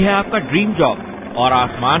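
Speech: a voice talking without pause.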